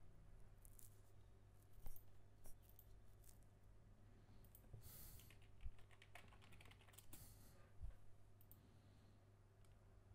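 Faint clicks of a computer keyboard and mouse: a few single clicks, then a short flurry about halfway through, over a low steady hum.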